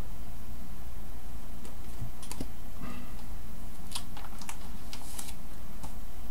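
Trading cards being handled and shuffled by hand, giving light, irregular clicks and ticks over a steady low hum.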